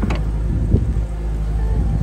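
A 2000 Chevrolet Corvette's 5.7-litre V8 idling with a steady low hum, with a brief knock about three quarters of a second in.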